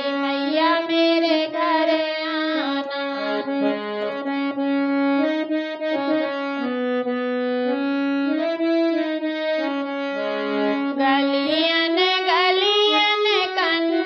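Hand-pumped harmonium playing a folk-song melody, its reeds holding steady notes that change step by step. About eleven seconds in, a woman's singing voice comes back in over it, wavering in pitch.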